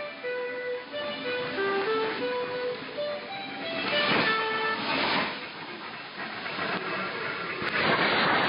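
Radio Mali's shortwave AM broadcast on 9635 kHz playing a melody of single held notes, with static crackle. The signal weakens into hiss near the end.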